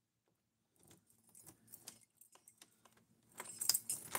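Phone-handling noise: irregular light clicks and rattles that start about a second in and grow louder near the end.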